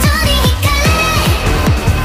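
Nightcore edit of a K-pop song: the track sped up and pitched up, with high girl-group vocals over an electronic beat and repeated falling-pitch bass hits.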